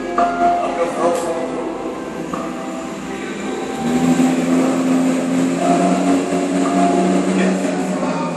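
Mercedes-Benz W140 S-Class engine pulling away up a garage exit ramp, echoing in the concrete, its note growing louder about four seconds in.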